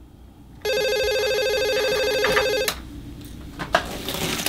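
A corded desk telephone rings once for about two seconds and cuts off sharply. A few clicks and rustling follow as the handset is lifted off its cradle.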